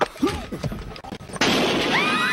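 A single gunshot fired inside a car about one and a half seconds in: sudden and loud, its noise hanging on afterwards. Just before it there are a few low knocks and murmurs, and screaming starts right at the end.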